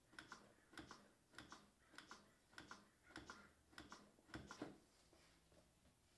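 Plastic CPR training manikin clicking under rapid chest compressions, a faint double click with each push and release about every 0.6 seconds. These are the last compressions of a 30-compression cycle, and they stop a little before the end.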